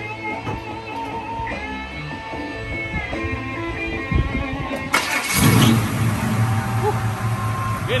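Guitar music plays in the background at first; about four seconds in a carbureted V8 engine is cranked, catches about five seconds in with a quick rev, and settles into a steady idle.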